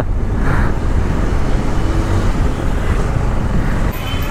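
Motorcycle engine running steadily while riding at low speed, with road noise.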